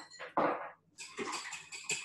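Wire balloon whisk beating cream cheese into double cream in a glass bowl. About a second in, a quick even run of clicks starts as the wires strike the bowl, about six or seven strokes a second.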